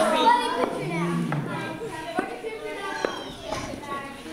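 Children's voices chattering and calling out over one another in a large hall, with a few brief knocks.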